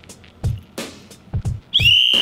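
Background music with a steady drum beat, then near the end a whistle is blown: a loud, single high shrill note that cuts in over the music and is held.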